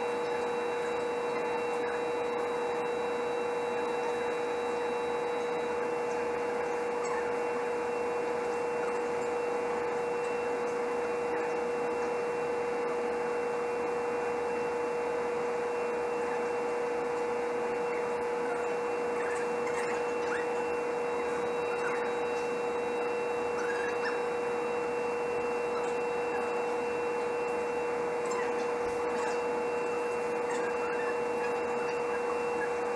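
A steady, unchanging hum of several held tones over an even hiss.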